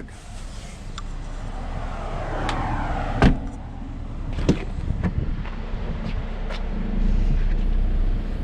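Car door of a 2020 Jeep Wrangler shut with one sharp thump about three seconds in, followed by a smaller knock about a second later, amid shuffling movement noise.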